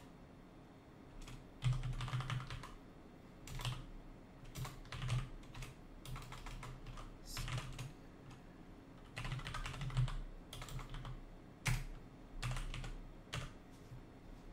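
Typing on a computer keyboard: irregular bursts of rapid keystrokes with short pauses between them, starting a little under two seconds in.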